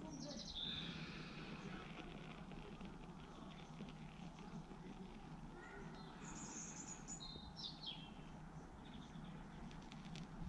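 Faint outdoor background with a few short, high bird chirps, about a second in and again between six and eight seconds in, over a steady low hum.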